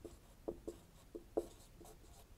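Marker pen writing on a whiteboard: about five short, faint strokes.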